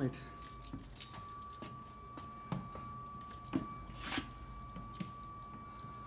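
A single organ pipe sounds a steady high tone on its own. This is a cipher: air keeps reaching the pipe through its valve, which the organist puts down to either dirt or something sticking. Scattered clicks and knocks come over it as someone moves through the organ's wooden interior.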